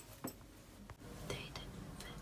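Faint whispering, with a few soft clicks and rustles.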